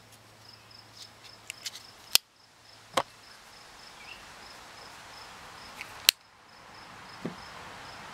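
Spyderco Delica 4 lockback folding knife worked one-handed: sharp clicks of the blade snapping open and shut. The clearest come about two and three seconds in, and the loudest about six seconds in. Under them a cricket chirps steadily in an even, high-pitched pulse.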